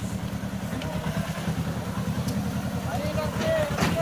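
Mahindra Jivo mini tractor's diesel engine idling with a steady, rapid low throb.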